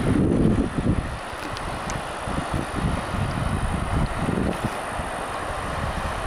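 Wind buffeting the microphone in irregular low rumbles over a steady rush of river water from rapids just ahead.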